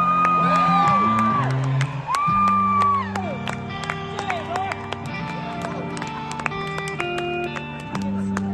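Live band playing a slow ballad intro through a concert PA, heard from the crowd. A high lead note is held and bent twice in the first three seconds over sustained keyboard chords, with crowd noise underneath.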